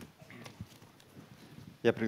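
Quiet, hall-like pause with a few faint scattered knocks and shuffles, then a man starts speaking loudly through the sound system near the end.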